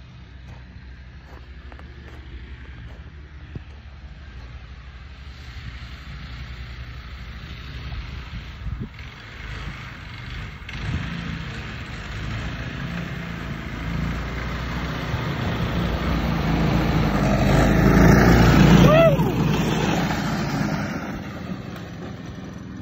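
Small engine of a homemade track sled running as the sled drives across snow. It grows steadily louder as the sled comes near, is loudest and drops in pitch as it passes close about three-quarters of the way through, then fades as it moves away.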